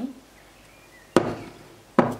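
Two sharp knocks about a second apart: a bowl and a dish being set down on a hard stone countertop.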